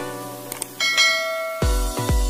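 A short click followed by a bright bell ding, the sound effect of a subscribe-button animation, over background music. About one and a half seconds in, an electronic dance beat with heavy bass thumps starts.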